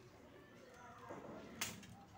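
Crisp deep-fried pakwan topped with dal cracking as it is broken apart by hand, with one sharp crack near the end.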